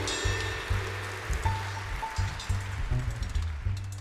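Live jazz with a grand piano playing sparse notes over a steady pulse from double bass and drums, with a shimmer of cymbals on top.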